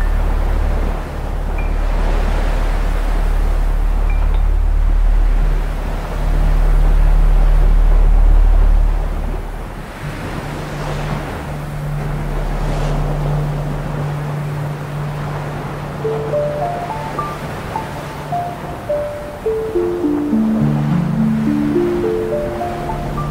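Dark ambient music: sustained low synth drones under a swelling wash of sea waves and wind. The deepest drone drops out about ten seconds in, and from about sixteen seconds a run of short notes steps down in pitch, then climbs back up near the end.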